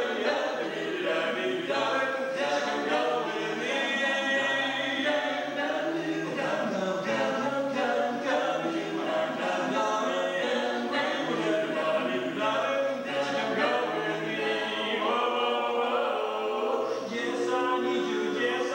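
A barbershop quartet singing a cappella in close-harmony chords, with no instruments.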